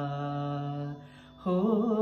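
A male voice singing a Hindi song. He holds one long, steady note that ends about a second in. After a brief gap, the next sung phrase begins near the end.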